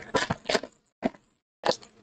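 Foil trading-card pack wrapper being torn open and crinkled: a run of crackling rips, then two short crinkles about a second and a second and a half in.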